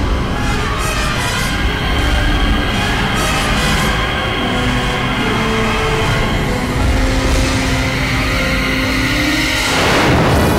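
Tense, dramatic background score with a deep low rumble and long held tones, loud and unbroken.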